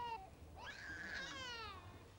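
Newborn baby crying: a short wail right at the start, then a longer, higher cry from about half a second in until near the end.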